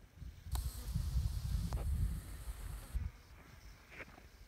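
Wind buffeting the microphone in gusts, with a hiss that starts abruptly about half a second in and cuts off about three seconds in, and two sharp clicks.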